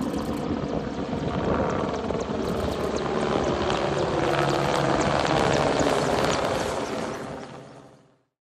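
Aircraft engine noise, loud and steady, fading out near the end.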